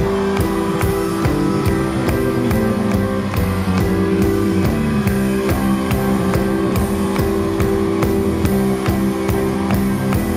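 Live band playing, with a drum kit keeping a steady beat under held chords.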